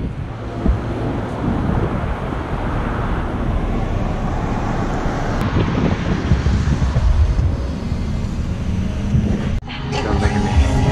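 Wind buffeting a GoPro microphone held out of a moving car's window, over steady tyre and road noise. The sound drops out briefly near the end.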